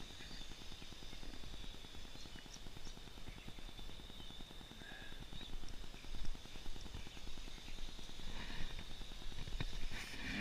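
Outdoor background noise: a steady high-pitched whine over a low rumble, with a few faint ticks.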